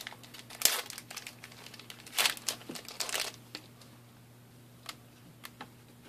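Trading cards being handled and flipped through by hand: a few short rustling, crinkling bursts in the first half, then only faint scattered clicks.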